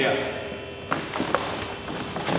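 A few light knocks and taps about a second in, from two people working through a slow kick-and-counter drill on a foam mat.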